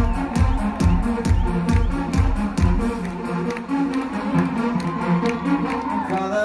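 Live pop band playing an instrumental passage through a concert PA: a kick drum on a steady beat, a little over two a second, under sustained keyboard chords and high ticks. The kick drops out about halfway, leaving the chords and ticks.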